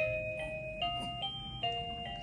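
Guty Kids musical crib mobile playing an electronic lullaby in clear, chime-like single notes, stepping from note to note about twice a second.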